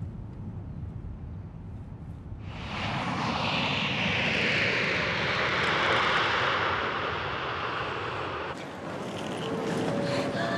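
Low, steady car-cabin rumble, then the engine noise of a jet airliner on landing approach coming in suddenly about two and a half seconds in, swelling to its loudest in the middle and fading away near the end.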